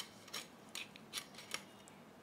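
A blade cutting through a small hilsa fish with about five short, crisp strokes, roughly one every half second.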